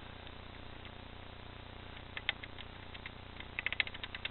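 Faint clicking from the controls of a Denon DN-S3700 DJ media player as folders are scrolled through: a couple of clicks about two seconds in, then a quick run of clicks near the end, over a low steady hum.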